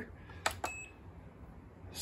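Button on a Hamilton Beach digital scale pressed: two quick clicks about half a second in, the second with a short high beep as the scale switches on.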